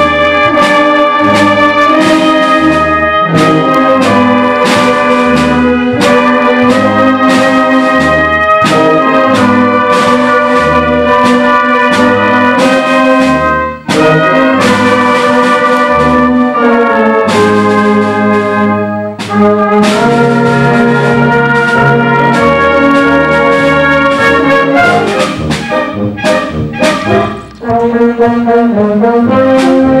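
Concert band playing a medley live, brass to the fore, with steady low notes underneath. The music breaks off briefly three times, about halfway through, a few seconds later, and near the end.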